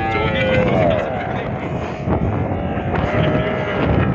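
Wind buffeting the microphone and tyre noise from an Ola S1 Pro electric scooter riding a dirt track in Hyper mode. A pitched sound slides down in pitch about half a second in, and again about three seconds in.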